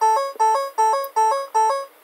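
Ford Focus ST instrument cluster warning chime: a rapid two-note electronic chime repeating about five times, sounding as warning messages pop up on the dash while the electric parking brake leaves maintenance mode.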